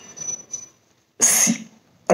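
A man's single short cough close to a microphone, a little over a second in, preceded by faint mouth and breath noises.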